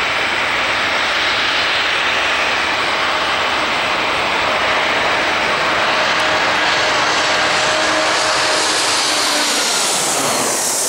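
Twin-engine jet airliner climbing out just after takeoff, its engines at takeoff thrust: a loud, steady roar, with a faint steady tone showing about halfway through and fading near the end.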